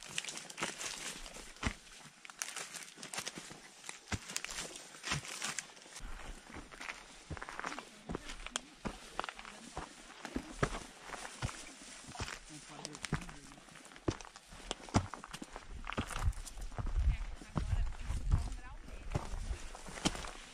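Footsteps on a dry dirt trail through brush, with irregular crunches and crackles of twigs and dry leaves. Low rumbling on the microphone in the last few seconds.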